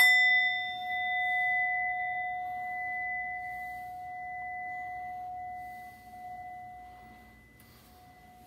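Brass singing bowl struck once, ringing out with a clear tone and higher overtones that waver gently and slowly fade over about seven seconds.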